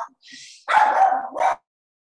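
A dog barking twice, loud and close, in the second half; then the sound cuts off suddenly.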